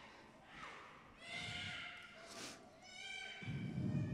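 Faint, high-pitched voices of young children in a church, a few short calls and squeals, some falling in pitch, with a low rumble of movement near the end.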